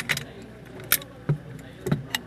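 Sharp metallic clicks and clinks as an M16 rifle's upper and lower receivers are worked apart by hand, about five in all, the loudest about a second in.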